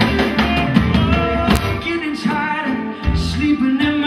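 Live band playing a song: acoustic guitar, electric bass, electric guitar and drums, with a man singing lead.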